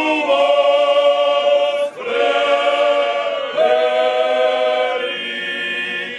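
Slovak men's folk choir singing a folk song unaccompanied, in long held notes, with a brief breath break about two seconds in and changes of chord later on.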